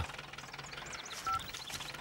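Small farm tractor's engine idling faintly, a low steady hum.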